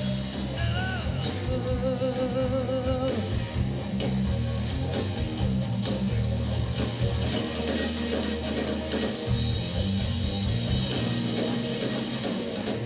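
Live blues-rock trio playing: overdriven electric guitar, electric bass and drum kit. In the first few seconds the guitar holds a lead note with wide vibrato, over a steady beat of cymbal strokes.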